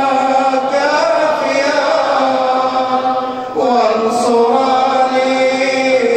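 A man chanting an Arabic du'a (supplication) in a melodic, drawn-out recitation, holding long notes with slow turns of pitch and pausing briefly for breath about three and a half seconds in.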